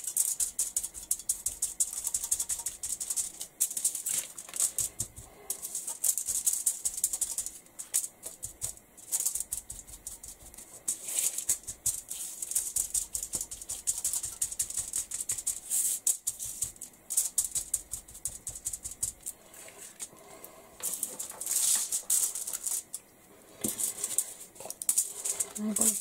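A small kitchen sponge dabbed quickly and repeatedly through a plastic stencil onto a card tag lying on aluminium foil: runs of crisp, rapid tapping with a papery crinkle, broken by short pauses.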